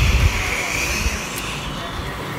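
A whooshing hiss, like an airplane swoosh, that swells in and fades out over about a second and a half, with a couple of low bumps at the very start.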